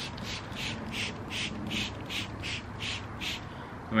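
Plastic trigger spray bottle of bleach squirted in quick repeated pumps onto a twisted cotton T-shirt, about four short hissing sprays a second, stopping about three and a half seconds in.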